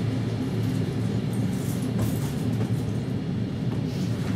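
Passenger train running, heard from inside the carriage: a steady low rumble of wheels on the rails, with a few faint clicks.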